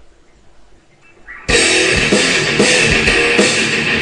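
A piece of royalty-free music, loaded by a Flash preloader, starts suddenly about one and a half seconds in and plays loudly from then on.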